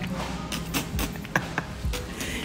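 Footsteps of shoes on a hard floor, the soles giving a few short, sticky taps and squeaks with each step, a sound called gummy.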